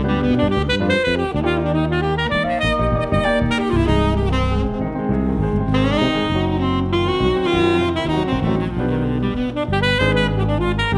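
Tenor saxophone playing a jazz line in front of a small ensemble, with sustained low bass and cello notes and piano underneath.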